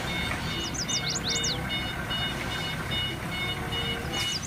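A Heli forklift's engine running steadily with a low rumble, with a string of short high beeps repeating over it and a few quick high chirps about a second in.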